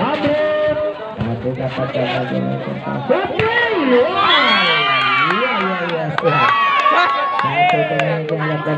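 Volleyball spectators shouting and cheering during a rally. Their calls swoop up and down in the middle, and they cheer again as the point ends. A few sharp knocks from play come through the voices.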